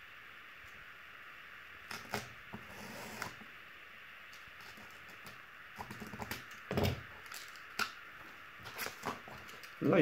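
Knife blade cutting through corrugated cardboard on a cutting mat: scattered short scratches and clicks, thickest about six to seven seconds in, over a steady faint hiss.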